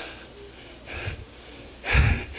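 A man's breathing into a close handheld microphone: a soft breath about a second in, then a louder low puff of breath hitting the mic near the end.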